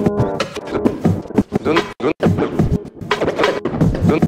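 Live turntable scratching on a Vestax Controller One: a record pushed and pulled by hand, its pitched notes chopped into short strokes by the mixer fader, with sliding pitch and abrupt cut-offs, as part of a scratch composition.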